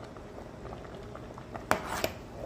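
Rice and meat cooking in milk in a metal pot, a steady bubbling simmer, with a sharp clack of the metal spoon against the pot near the end.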